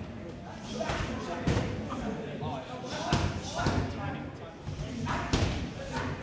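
Gloved punches and kicks smacking into leather Thai pads held by a trainer, about six sharp strikes in irregular combinations, with the hall echoing behind them.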